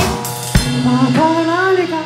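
Live rock band playing: drum kit hits under held, wavering notes, with a drum hit about half a second in.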